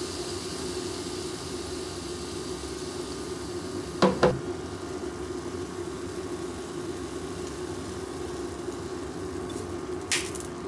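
A steady low kitchen hum, with two sharp knocks close together about four seconds in as a seasoning bottle is handled and set down.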